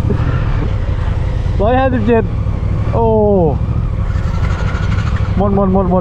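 Steady low rumble of wind on the microphone and road noise from a small motorcycle rolling slowly along the road, with two short exclamations from the rider in the middle.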